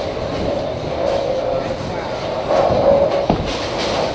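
Bowling alley din: bowling balls rolling down the lanes in a steady rumble under background chatter. A single sharp thud comes a little over three seconds in, as a bowling ball is released onto the lane.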